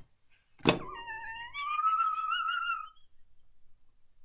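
A single thump, then a high-pitched, wavering squeal of about two seconds from a man stifling a laugh behind his hand.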